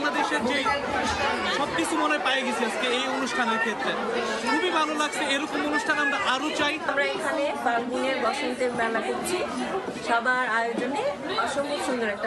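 A man speaking into an interviewer's microphone, with other people's voices chattering around him.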